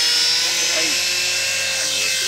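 Electric RC model airplane's motor and propeller running in flight: a steady high-pitched whine that drifts slightly in pitch.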